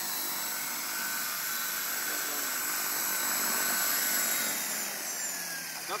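CopterX 500 electric RC helicopter hovering just off the ground: a steady whine from its brushless motor and gears over the rush of the main rotor. Near the end the pitch and level fall as the helicopter settles onto the grass and the rotor slows.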